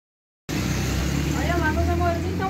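Silence for about half a second, then a steady low hum with background noise cuts in. A voice starts about halfway through.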